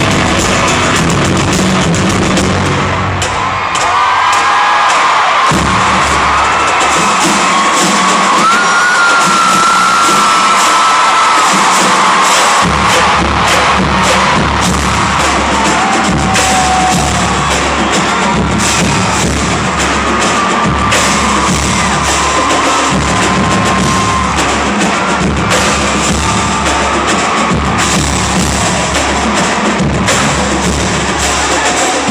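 Marching drumline on snare, tenor and bass drums playing a loud drum cadence of many sharp hits. A large arena crowd cheers, whoops and whistles over it. The deep bass-drum beats drop out for several seconds early on and come back about halfway through.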